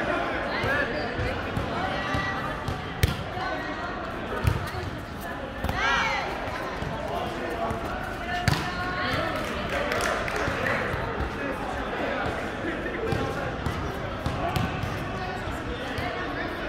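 Volleyball being struck by players' hands and forearms during a rally: a few sharp slaps of the ball, the clearest about three, four and a half and eight and a half seconds in. Players' voices and calls carry on throughout, with one drawn-out shout about six seconds in, in a large hall.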